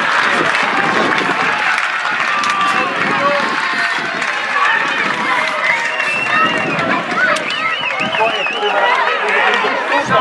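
Football spectators and players talking and calling out, many voices overlapping without any one clear speaker.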